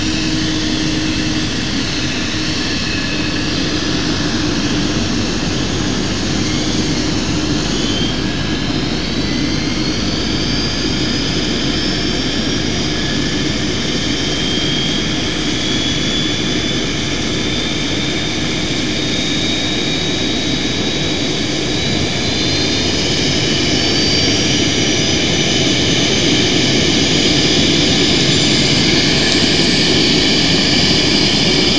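Rear-engined regional jet's turbofan engines running loud and steady during push-back. From about eight seconds in, a whine climbs slowly in pitch for some fifteen seconds, and the sound grows a little louder in the last third, as an engine spools up.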